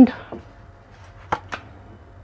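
Two short, sharp taps of tarot cards being drawn from the deck and laid on the table, about a fifth of a second apart, roughly a second and a half in.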